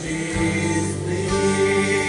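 Live worship music: several voices singing a slow song with a band, holding long notes.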